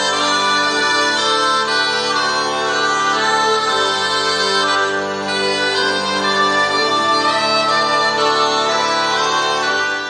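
Bagpipe (cornamusa) playing a slow melody over steady held drones, continuous and fairly loud.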